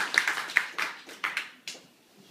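Scattered hand claps from a small audience, thinning out to a few last claps and fading away near the end.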